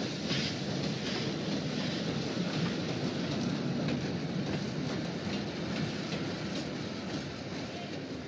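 Steam train running along the tracks: a steady rolling noise with light clicks of the wheels over the rails.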